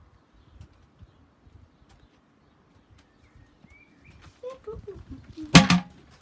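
Mostly quiet, with scattered faint ticks and a short faint rising chirp about three seconds in, then a sharp double knock near the end, the loudest sound here.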